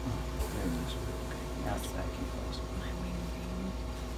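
Quiet, indistinct murmured voices over a steady low room hum, with a few small clicks and rustles from hands working on the turkey.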